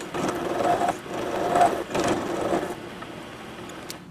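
A vertical milling machine's end mill plunge-cutting a slot into metal bar stock. The cutting noise swells and eases with each push of the cutter, then drops to the quieter sound of the running spindle about three seconds in, once the cutter is out of the work.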